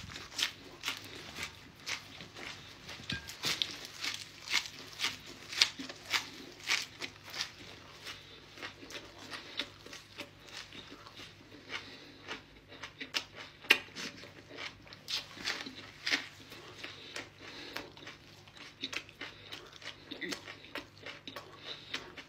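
A person biting and chewing fresh leafy greens and flatbread close to the microphone: irregular crisp crunches, a few a second.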